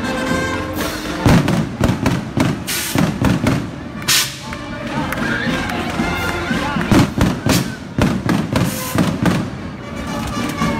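A string of firecrackers going off in rapid, irregular bangs from about a second in, with a short lull midway, over band music and voices.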